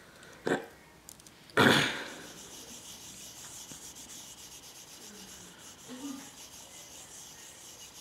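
Two brief rubbing, brushing noises, a short one about half a second in and a louder one about a second and a half in, then only a faint steady hiss.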